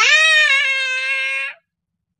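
A woman's voice holding one long, high-pitched, drawn-out "bye" for about a second and a half, then cutting off.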